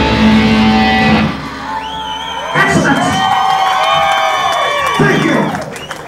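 A live heavy metal band with distorted electric guitar and bass hits its final chord, which cuts off about a second in. Crowd cheering and whoops follow, with drawn-out pitched tones.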